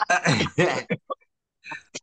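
A man clearing his throat: one rough rasp lasting about a second at the start.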